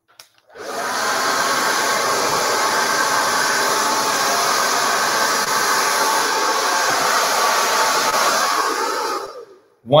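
Handheld hair dryer switched on, blowing steadily with a faint motor whine as it dries a section of hair over a paddle brush. It shuts off shortly before the end.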